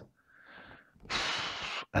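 A faint short sound, then about a second in a loud breath through the nose lasting just under a second.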